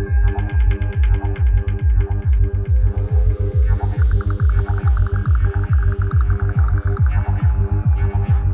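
Progressive psytrance music with a rolling, throbbing bassline pulsing several times a second under held synth tones, and a high filter sweep falling in pitch over the first few seconds.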